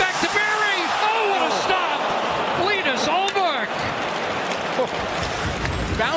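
Hockey arena crowd reacting loudly to a scoring chance in front of the net, voices swelling and falling in waves, with a few sharp clacks about three seconds in.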